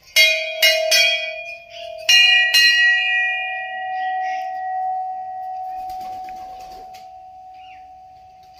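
Hanging brass temple bells struck by hand: three quick rings, then two more about two seconds in, with a second, slightly higher-pitched bell joining. The ringing dies away slowly.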